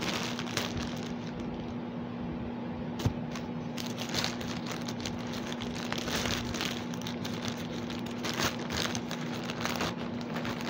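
Plastic mailer bag crinkling and crackling as it is slit with a knife and pulled open by hand, with a single sharp click about three seconds in.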